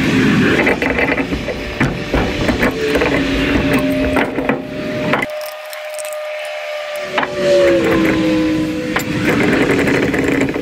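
Clinks and scraping of a wrench and brass pipe fittings being worked loose from a boiler heat exchanger clamped in a vise. Under the clicks runs a steady hum whose pitch drops near the end.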